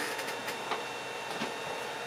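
Low steady background hum with a few faint clicks and light knocks as a large plastic 3D-printed dragon is picked up and handled.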